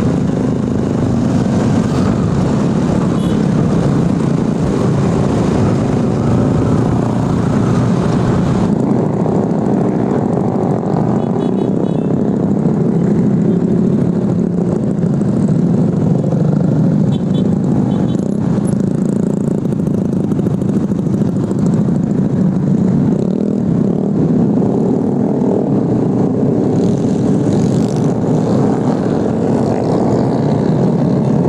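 Motorcycle engine running at a steady pace in moving traffic, with wind and road noise and other motorcycles around. About nine seconds in the sound changes: the deep rumble and the hiss drop away.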